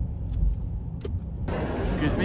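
Low, steady rumble of a car's engine and road noise heard from inside the cabin, with a faint click about a second in. A wider hiss joins near the end.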